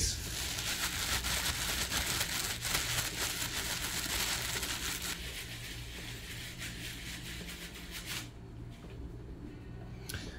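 Clear plastic shrink wrap from a vinyl record, crinkled and crumpled by hand right up at the microphone. It makes a dense crackling that dies away about eight seconds in.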